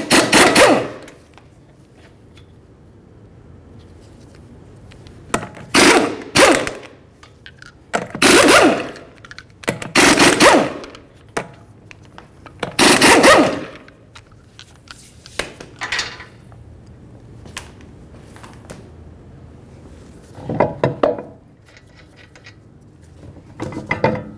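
Half-inch impact gun rattling off wheel lug nuts: loud bursts of rapid hammering, one per nut, five main bursts a few seconds apart, with shorter bursts later on.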